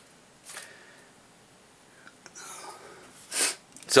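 A man takes a sharp, noisy breath through the nose, a short sniff about three and a half seconds in, with a fainter breath about half a second in over quiet room tone.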